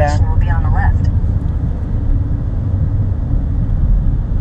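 Steady low rumble of a car's engine and tyres on the road, heard inside the cabin while driving.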